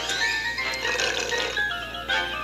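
Cartoon score music with short held notes stepping from one to the next, played through a television's speaker, with a growling creature sound from the cartoon dinosaur mixed in.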